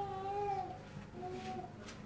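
Two high-pitched vocal calls, each held on one pitch and dipping at the end; the first lasts under a second, the second is shorter and softer.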